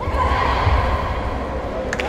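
A woman's high-pitched shout, held for most of two seconds and slowly falling in pitch, over the low din of a busy hall.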